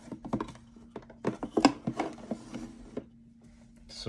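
Cardboard box packaging and booster packs being handled: a flurry of light clicks, taps and scrapes in two bursts, the busier one starting about a second in.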